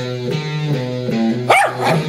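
Guitar notes ring for about a second and a half, then a dog gives one short bark that rises and falls in pitch.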